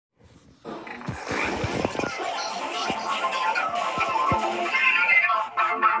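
Logo-effects video soundtrack, music and sound effects, playing through a laptop's speakers: a busy mix with several short downward swoops in the first half.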